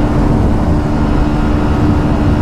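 Honda Shine 125's single-cylinder engine held at steady high revs at full throttle, with heavy wind rush on the microphone. The engine note stays flat, with no gear change: the bike is at its top speed.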